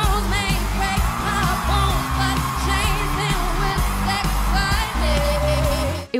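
Pop song from a live stage performance: a woman singing, with wavering held notes, over a heavy electronic bass beat.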